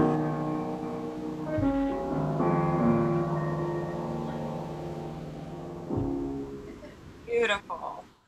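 The closing chords of a small-group jazz recording, piano to the fore, held and slowly fading out, with two chord changes along the way. A voice starts talking just before the end.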